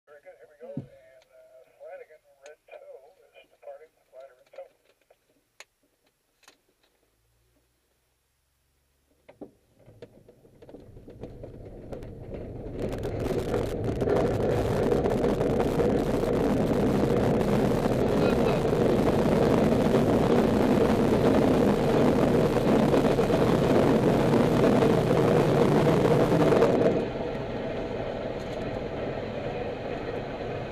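A glider's takeoff roll on aerotow across a dry lake bed, heard from the cockpit: from about ten seconds in, a rumbling rush of the wheel rolling over the hard lakebed and of the airflow builds for a few seconds and then holds loud and steady. About 27 seconds in it drops suddenly to a quieter steady rush as the glider lifts off the ground.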